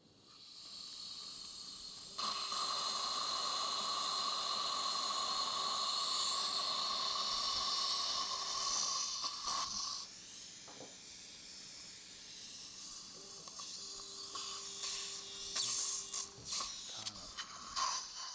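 Dental implant surgical handpiece turning a 3.5 × 10 mm guided drill, a steady whine with a lower hum as it widens the implant hole in the upper jawbone through a surgical guide. It runs for about seven seconds from about two seconds in, then again more briefly later, over a constant hiss from the surgical suction.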